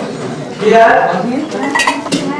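Metallic clinking and ringing over a crowd's voices, sharpest near the end.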